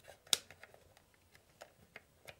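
Plastic push button on a Hornby train set controller clicking under the fingers: one sharp click about a third of a second in, then a few faint clicks. The button is stiff and keeps sticking.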